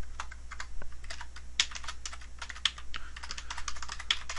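Typing on a computer keyboard: a quick, uneven run of key clicks as a short database query is typed.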